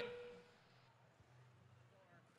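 Near silence: a man's voice trails off in the first half second, then only faint room tone with a weak low hum.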